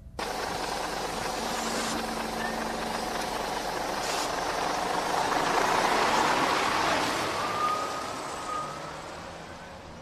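A large road vehicle going past, its noise swelling slowly to a peak about six seconds in and then fading away.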